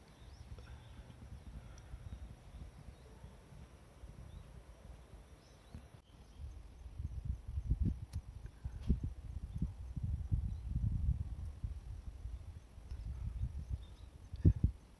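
Low rumbling and dull thumps on the microphone. They grow louder about halfway through while masking tape is peeled off a fresh caulk bead by hand.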